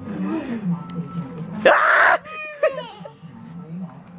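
A toddler's voice: a short loud burst of noise a little under two seconds in, then high squealing whines that glide up and down in pitch.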